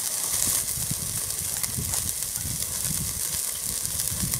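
Steak sizzling steadily as it sears on a grate directly over a chimney starter of hot lump charcoal, with a low, uneven rumble underneath.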